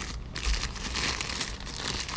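Thin plastic packaging bag crinkling as it is handled, a run of irregular crackles.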